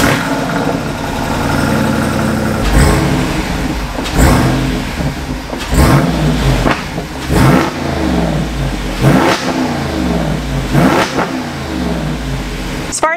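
Jeep Wrangler Rubicon 392's 6.4-litre HEMI V8 idling with its active exhaust valves open, then revved about six times in quick blips, each rising and falling back to idle.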